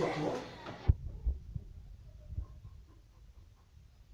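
Voices chatting in the first second. Then a few faint, dull low thuds of bodies and feet on foam judo mats, the first about a second in.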